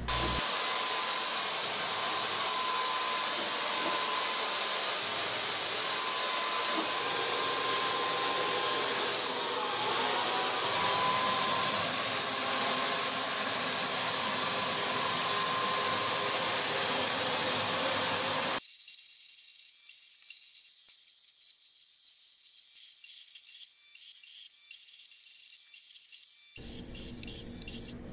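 Wagner Flexio 590 HVLP paint sprayer running, a steady air hiss with a faint whine, as paint is sprayed. About two-thirds of the way through it cuts off abruptly to a quieter, thinner hiss.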